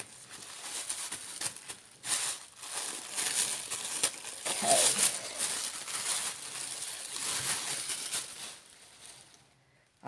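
Tissue paper wrapping being unfolded and handled, crinkling and rustling in uneven bursts, fading out near the end.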